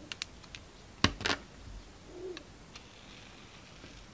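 A snap-off utility knife blade cutting into a bar of soap, making crisp clicks: a few light ticks at first, then two sharp, louder cracks close together about a second in, and one faint tick near three seconds.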